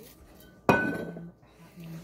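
A glass liqueur bottle set down on a granite countertop: one sharp clink with a brief ring, about two-thirds of a second in.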